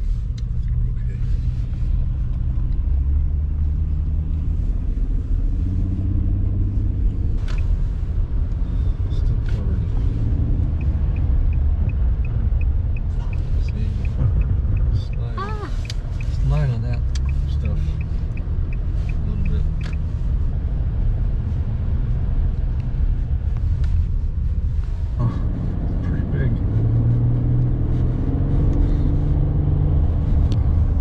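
Steady low rumble of a car's engine and tyres on a snowy, slushy road, heard from inside the cabin. A turn signal ticks evenly for about nine seconds in the middle, about three ticks a second.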